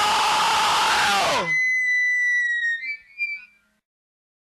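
Ending of a thrash metal track: the full band with distorted guitars holds a final chord that slides down in pitch and cuts off about a second and a half in. A single high squealing guitar tone is left ringing; it wavers and fades out before the end.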